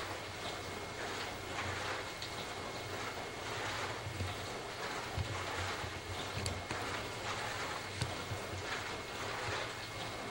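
Dishwasher running mid-cycle: a steady wash of water spraying inside the tub over a low pump hum.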